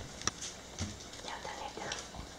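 Dog eating wet food from a stainless steel bowl: scattered clicks and licking of teeth and tongue against the metal.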